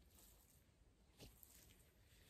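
Near silence, with faint soft steps through short grass as a person walks closer; one step about a second in is a little louder.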